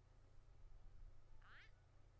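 Near silence: a steady low electrical hum, with one brief, faint, high-pitched squeaky sound about one and a half seconds in.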